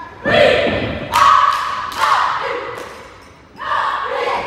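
A cheerleading squad shouting a chant in unison in four loud bursts, with heavy thuds on the floor mat.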